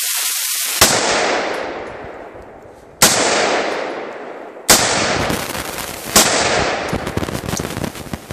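AR-15 rifle in .223 fired four times, semi-automatic, about two seconds apart, each shot followed by a long echo that dies away. A steady hiss comes before the first shot, and a crackling noise follows near the end.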